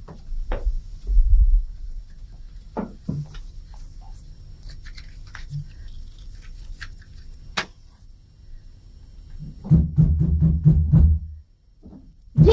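Scattered light clicks and knocks of dishes and small objects being handled on a table, with a low rumble in the first second. A low rhythmic musical beat comes in about ten seconds in.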